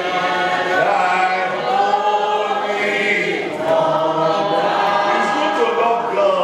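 A gathering of people singing together as a choir, with long held notes that change pitch about once a second, like a hymn.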